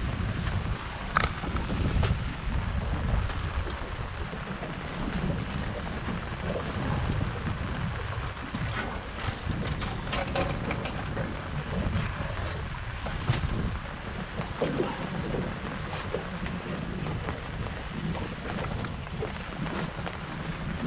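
Wind buffeting the microphone in a steady, gusting rumble, with a few scattered sharp knocks and clunks as fish are shifted about in the bottom of the boat.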